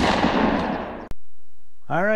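A single sudden loud bang closing the intro music, dying away over about a second and then cut off, followed by a short silence; a man's voice begins near the end.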